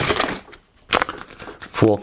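Handling noise as a handheld radio antenna is picked up from the desk: a rustle, a single sharp knock about a second in, then more rustling.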